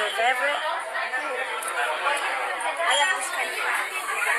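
Overlapping voices: indistinct chatter of several people talking in a busy room.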